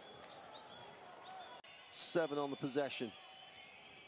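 A short, fairly quiet phrase in a man's voice about two seconds in, over a faint steady background hiss.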